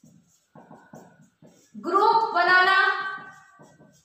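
A woman's singing voice holding one long note for about a second and a half near the middle, with faint short low sounds around it.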